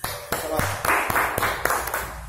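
Hand clapping in a steady rhythm, about four claps a second, applause for a finished round of push-ups, with voices mixed in.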